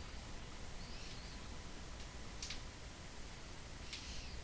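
Quiet room noise with a steady low hum, a faint brief chirp about a second in, and a couple of faint soft clicks, one about halfway through and one at the end, as a hackle feather is handled.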